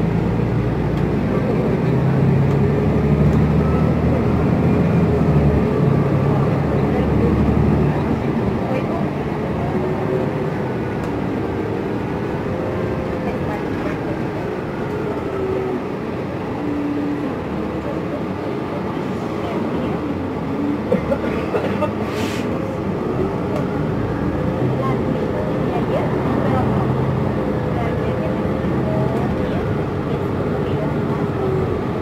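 Inside an articulated New Flyer Xcelsior XN60 natural-gas bus under way: engine and drivetrain running, with a whine that slowly rises and falls as the bus changes speed, over road noise. The low hum is heaviest in the first several seconds, and a brief knock or rattle comes about two-thirds of the way through.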